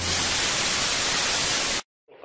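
Television static: an even, loud white-noise hiss that holds steady for nearly two seconds and cuts off suddenly near the end.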